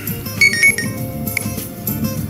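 Cellphone ringtone playing, a short melody of bright chiming tones that repeats.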